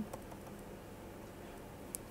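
Faint background hiss with one short, soft tap near the end: a stylus writing on a pen tablet.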